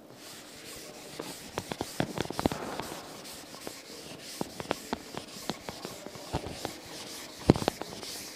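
A chalkboard being wiped with a duster in quick, repeated scrubbing strokes, with small knocks of the duster against the board. There is one louder knock near the end.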